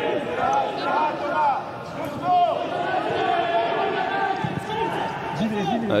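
Players shouting to one another across the pitch, their calls echoing around an empty football stadium, with an occasional thud of the ball being kicked.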